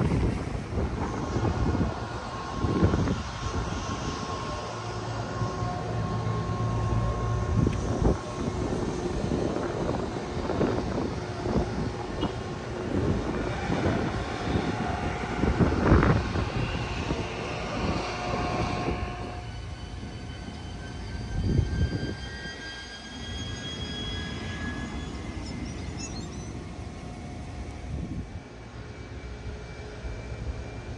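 Low vehicle rumble with gusts of wind on the microphone. From about two-thirds of the way in, a jet aircraft engine's high whine of several tones rises slowly in pitch.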